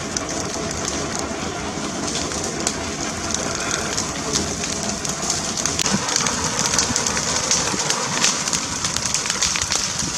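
Wildfire burning through trees and brush: a steady rushing noise with dense crackling and popping, the crackles growing thicker and a little louder about halfway through.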